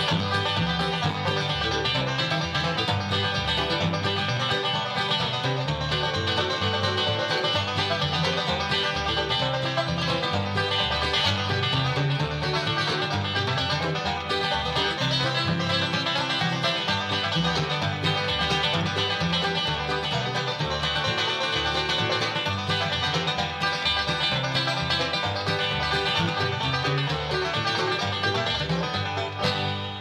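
Bluegrass band playing an instrumental, a five-string banjo taking the lead over guitar and bass. The music fades out right at the end.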